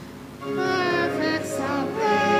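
Hymn singing: voices, chiefly women's, take up a new sung phrase about half a second in after a short breath, over a steady instrumental accompaniment.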